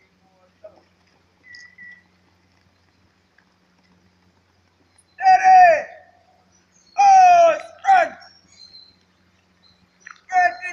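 A voice shouting drawn-out drill commands: a long call with falling pitch about five seconds in, then another long call and a short, sharp one about two seconds later.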